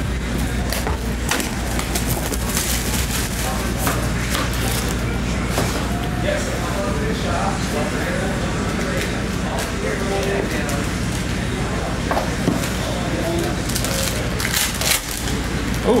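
Shrink-wrapped cardboard box of trading cards being unwrapped and opened by hand: plastic wrap crinkling and tearing and cardboard scraping, a dense run of irregular crackles and clicks over a steady low hum.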